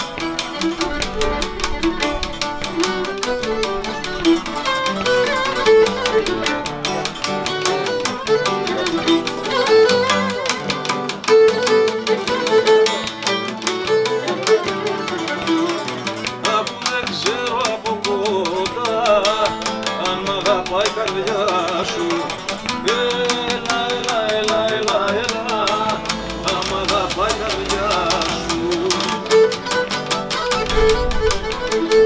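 Live Cretan syrtos played on Cretan lyra, with laouto and acoustic guitar strumming the accompaniment. The bowed lyra carries the melody.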